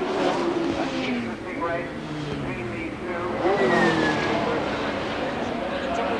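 Racing saloon cars passing at speed with their engines at high revs, the engine pitch falling as they go by.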